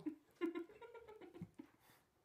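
A young woman laughing in short, breathy spurts that fade out near the end.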